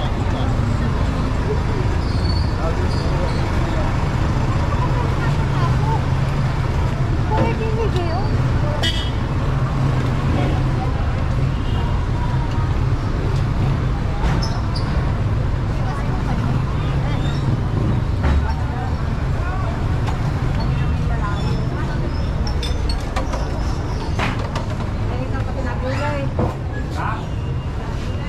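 Busy street traffic: vehicle engines running with a steady low rumble as vehicles pass, a short horn toot, and people talking indistinctly nearby.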